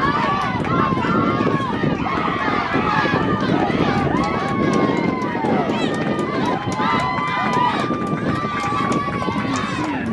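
Many voices of football spectators and sideline players yelling and cheering over one another while a play runs, with several long held shouts.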